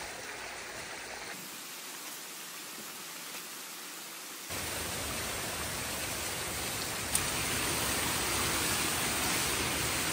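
Water rushing through an opened breach in a beaver dam, a steady noisy rush that gets louder about four and a half seconds in. A single sharp tap comes near seven seconds.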